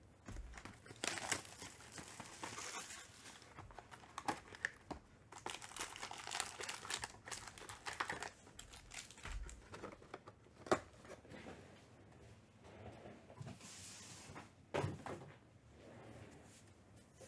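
Foil trading-card packs crinkling and rustling as they are handled and lifted out of an opened cardboard box, in a few louder stretches with scattered clicks and taps.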